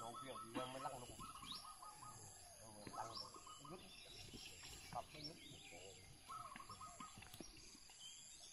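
Faint birds calling: a short rising chirp repeated every second or so, and a rapid trilled call that comes and goes several times. A few faint knocks are heard among them.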